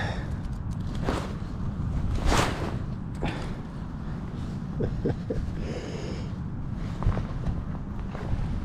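Wind buffeting the microphone with a steady low rumble, broken by a few short breathy swells of noise, the loudest about two and a half seconds in.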